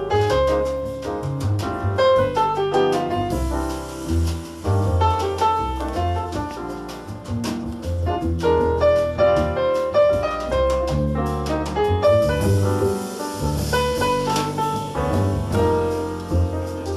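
Jazz piano trio playing live: grand piano melody over walking upright double bass and drum kit, with the cymbals growing busier in the last few seconds.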